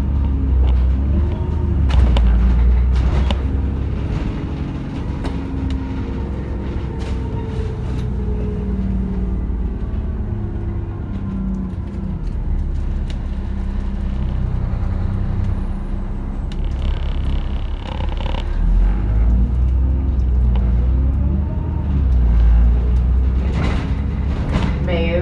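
Inside the upper deck of an Alexander Dennis Enviro 400 double-decker bus on the move: a steady low engine and road rumble, with a few short knocks and rattles from the body. The engine sound eases off through the middle and picks up again about three-quarters of the way through.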